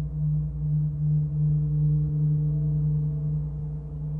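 Large bronze gong kept sounding by soft felt mallets: a deep steady hum that gently swells and ebbs, with fainter higher ringing tones above it and no distinct strikes.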